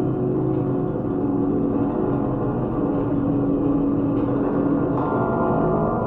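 The bars of a metal awning played as percussion instruments, sounding a sustained drone of many steady ringing metallic tones with no distinct strikes. A lower tone swells in the middle, and higher tones join near the end.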